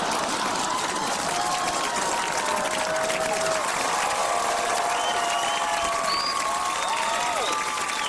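Studio audience applauding and cheering steadily, with voices calling out in the crowd.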